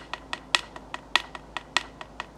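A hand-held percussion beat of sharp, dry clacks, about three a second, with every second stroke accented and each ringing briefly with a bright click, like a wood block.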